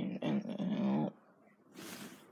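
A drawn-out, wavering growl-like vocal sound that stops about a second in.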